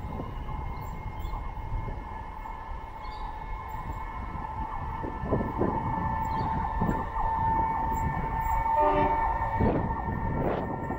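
Distant freight train hauled by diesel locomotives approaching: a low rumble with steady high tones above it, growing louder toward the end, with a short pitched tone about nine seconds in.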